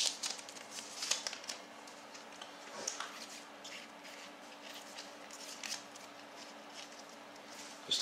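A packet of trading cards being torn open and the cards handled and slid through the fingers: a scatter of small crinkles and clicks, busiest in the first second and again around three seconds in, with a faint steady hum underneath.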